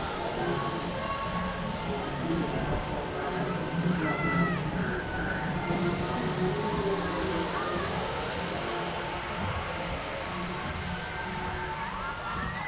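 Ride ambience on a spinning flying-elephant carnival ride: a low steady hum under faint music and high-pitched children's voices, with one call rising and falling about four seconds in.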